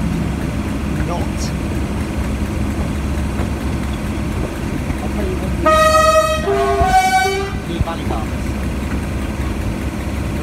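Class 37 diesel locomotive's English Electric V12 engine running steadily under power, heard from the cab window. About six seconds in, its two-tone horn sounds a higher note then a lower one, about two seconds in all.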